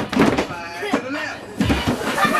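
A group of children's voices talking and calling out, with heavy thuds at the start and again near the end.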